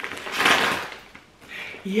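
A plastic mailing bag being torn open by hand: one short ripping noise lasting under a second.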